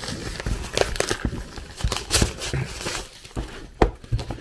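Plastic courier mailer bag crinkling and rustling as it is cut and torn open, with scattered sharp clicks and a sharper click near the end.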